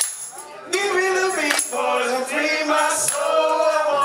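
Live band: a man sings long, held wordless notes over electric bass and drums, with a few sharp percussion hits. After a quieter first moment, the full band comes in loudly under a second in.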